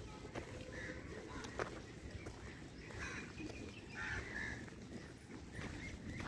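Crows cawing faintly, a handful of short calls spaced a second or so apart over a quiet outdoor background.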